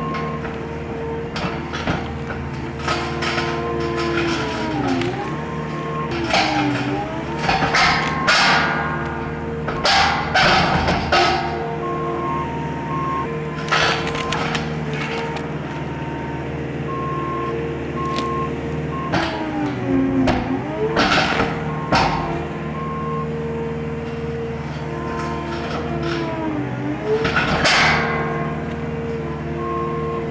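Diesel engine of a JCB compact track loader running under hydraulic load, its pitch sagging several times as it lugs while a tree puller grips and pulls a small tree out by the roots. Irregular sharp knocks and cracks come over the engine, loudest in the middle and near the end.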